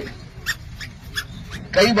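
A man's speech through a microphone breaks off for a pause. A few short, faint sounds fall in the gap, and the speech resumes near the end.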